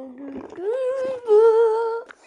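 A voice humming one long note, held low at first, then sliding up about half a second in to a higher note that is held and louder.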